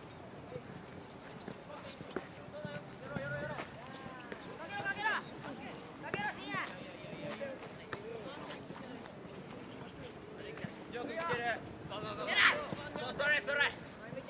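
Young football players shouting calls to each other across the pitch in scattered, high-pitched shouts, the loudest a little before the end, over low open-air background noise.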